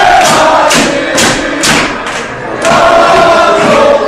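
Football supporters chanting loudly in unison, with sharp rhythmic claps about twice a second for the first two seconds. The chant dips briefly a little after two seconds, then picks up again.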